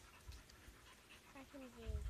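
A dog gives a faint whine that falls slightly in pitch near the end, over a quiet background with a few low thumps.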